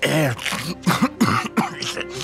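A man clearing his throat several times in quick succession, harsh and voiced, the first with a falling pitch.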